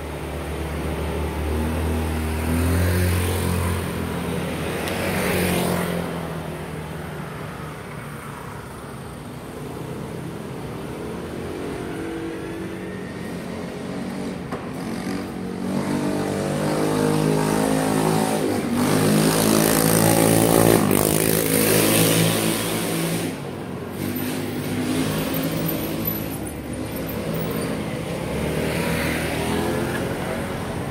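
Motor vehicles passing on a street, their engines rising and falling in pitch as they come and go; the loudest pass comes a little after the middle.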